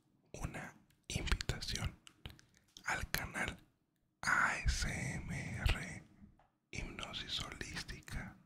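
A man whispering in Spanish close to a microphone, in short phrases with brief pauses between them.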